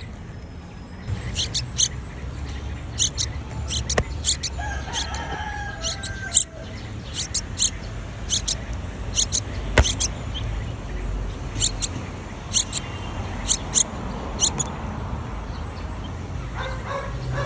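Small birds chirping: many short, high chirps, often two in quick succession, repeating through most of the stretch. Two sharp taps are heard at about 4 and 10 seconds, over a low rumble.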